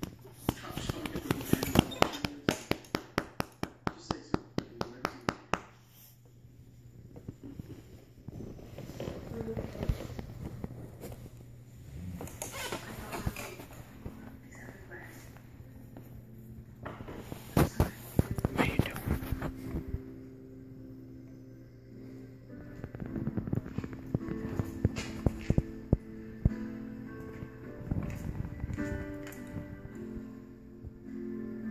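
Doberman pinschers licking at each other's mouths and faces: a fast run of wet smacking clicks, about four a second, then further bursts of licking. About halfway through, music with sustained notes comes in under it.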